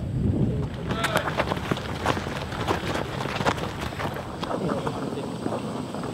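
Many quick, irregular footfalls from a group of players bounding on a rubber running track, with indistinct voices in the background.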